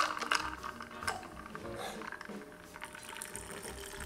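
Faint sound of a shaken margarita being poured unstrained (a dirty pour) from a stainless steel shaker tin into a glass, the liquid stream splashing into the drink.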